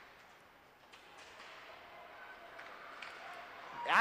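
Faint ice hockey rink sound during play: skates on the ice and a few light clicks of sticks and puck over low arena noise.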